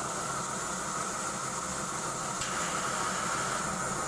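PVC pipe socketing machine running: a steady hum with a continuous hiss, which grows a little brighter about two and a half seconds in.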